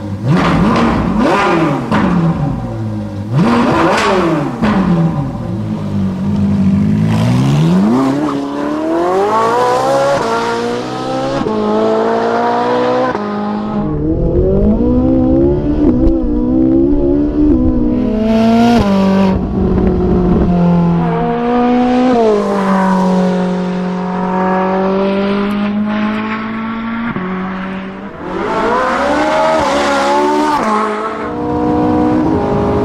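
Car engine revving loudly, its pitch climbing and dropping again and again, with quick rises and falls at first and longer climbs later.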